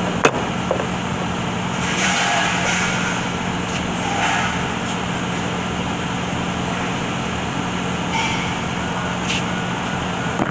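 Steady workshop background noise with a constant low hum and occasional faint clatter; a sharp metallic click just after the start as a transmission part is set down on the steel bench.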